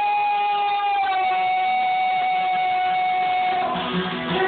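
A man singing one long, high held note over an acoustic guitar, the pitch easing slightly lower about a second in; the note ends shortly before the close and the guitar comes back in.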